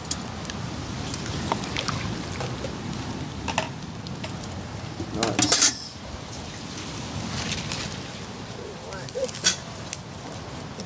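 Handling sounds of washing fish: a stainless steel bowl and a pot of water being worked with, giving scattered clinks and a louder clatter about five and a half seconds in, over a steady outdoor background.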